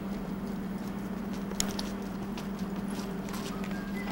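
Footsteps on a concrete plaza, a scatter of short sharp taps, over a steady low hum.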